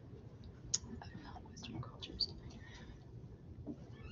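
A quiet pause on a video-call microphone: faint breathy mouth sounds and soft noises, with two small clicks about a second and two seconds in.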